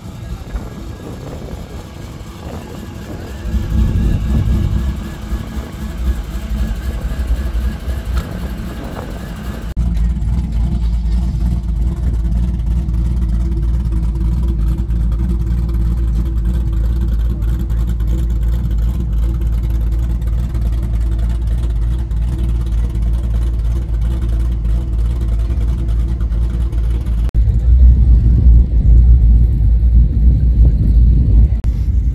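A car engine running at a steady idle with a deep rumble, settling in suddenly about ten seconds in and growing heavier near the end; before that, a mix of outdoor crowd sound.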